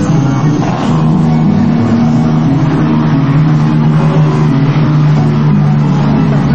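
Saxophone section of an Andean orquesta típica holding long, loud low notes together.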